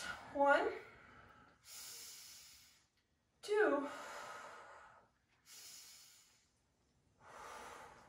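A woman taking slow, deep breaths during a stretch, with each inhale and exhale audible on its own. One exhale, about three and a half seconds in, is voiced as a falling sigh.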